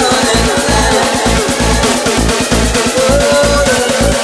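Electronic dance music from a DJ set played loud over a festival sound system, with a steady kick drum beat about two times a second and gliding synth lines above it.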